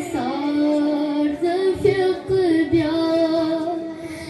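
A boy singing a manqabat, a devotional hymn, solo into a microphone in a high voice with long held, wavering notes.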